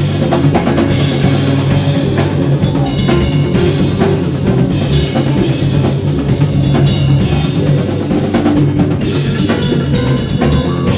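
Live rock band playing an instrumental stretch with no singing: a Tama drum kit's bass drum and snare keep a steady beat under electric guitar and bass guitar.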